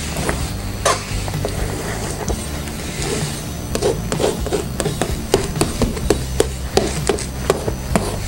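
Metal palette knife tapping and scraping paint onto a canvas, with quick irregular taps, about three a second in the second half.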